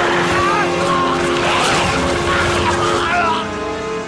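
Film soundtrack: sustained dramatic music with high, wavering creature screeches over it. This is the sound design of an animated reptile fight.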